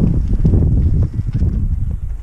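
Loud, low wind rumble buffeting the microphone as the pony cart moves on along the gravel track.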